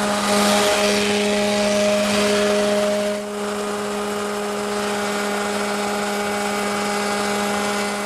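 Router shaper fitted with a multi-profile bit, running steadily with a hum while it cuts a half-round profile along a strip of wood molding. The cutting noise is heaviest for the first three seconds, then the machine runs on more evenly.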